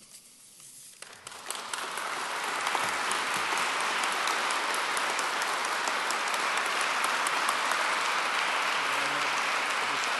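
Audience applauding: the clapping starts about a second in, builds over the next second or so and then holds steady.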